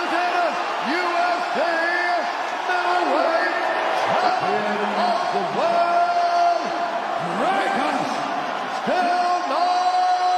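Arena ring announcer calling out the champion's title in long, drawn-out, echoing words ("...undisputed UFC middleweight champion of the world..."), over the noise of an arena crowd.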